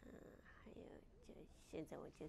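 A woman talking quietly, breathy at first and then in short spoken bursts.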